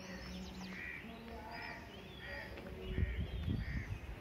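Birds calling: one bird repeats a short call evenly, a little more than once a second, with thin high chirps from other birds over it. A low rumble on the microphone comes in near the end.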